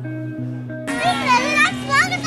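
Background instrumental music with steady held notes; about a second in, children's excited high-pitched voices break in suddenly and run on over the music.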